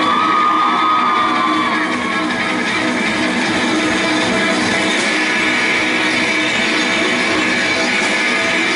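Live rock band playing with drum kit and electric guitar; a held high note, rising slightly as it starts, stands out over the first two seconds.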